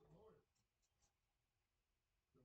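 Very faint: a brief hummed vocal sound at the start, then a few faint soft crackles as a charcoal peel-off mask is pulled from the skin of the face.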